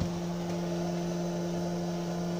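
Small electric water pump for a solar-panel cooling loop, running with a steady hum. A filter fitted in front of it makes it run a little louder.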